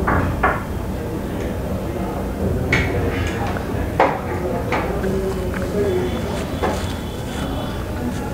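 Restaurant room sound: a steady low hum with faint indistinct voices, and several short sharp clicks and knocks scattered through it.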